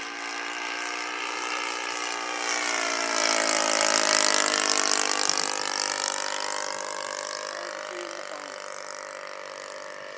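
Four-stroke O.S. 120 glow engine of a radio-controlled Tiger Moth biplane running steadily in flight at just under half throttle. It grows louder to its loudest about four seconds in as the model passes, then fades.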